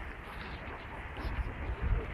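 Steady rushing of the fast-flowing, flood-swollen Vistula river, with a low wind rumble on the phone's microphone.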